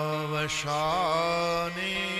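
A man's voice chanting in a sung, devotional style, holding long notes. There is a brief wavering turn about a second in and a slight step up in pitch near the end.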